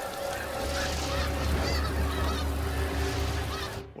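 Nature ambience sound effect: many birds calling over a low rumble, with a couple of held tones, cutting off abruptly near the end.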